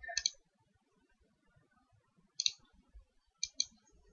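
Computer mouse clicking: a quick double click right at the start, another cluster about two and a half seconds in, and two more clicks near the end.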